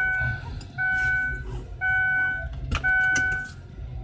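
Car's seatbelt warning chime sounding about once a second, four times, then stopping, while the driver buckles up, with a sharp click near the end.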